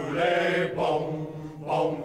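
Mixed-voice choir singing a chant, with a low held note sustained beneath sung phrases that repeat a little under once a second.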